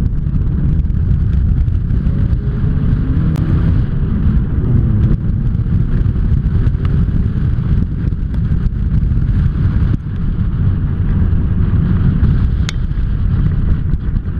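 Sports car accelerating hard from a standing start on an autocross course, its engine revving up through the gears under heavy low wind rumble on an outside-mounted camera.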